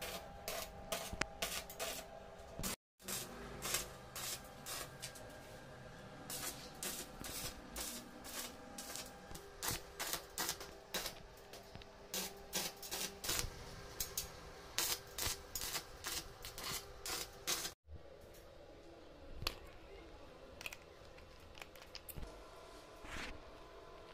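Arc welding a stainless steel railing tube with a stick electrode: a rapid, irregular crackling and popping from the arc. It breaks off briefly twice.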